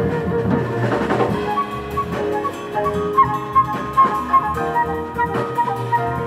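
Live jazz combo playing an instrumental passage: a flute carries the melody, turning to a run of quick short notes about a second and a half in, over piano, upright bass and a drum kit.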